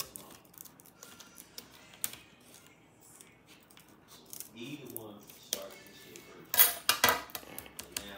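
Scissors snipping through the thick plastic top of a hard-to-open pouch, a scatter of sharp clicks and crinkles. A louder short burst of sound comes about seven seconds in.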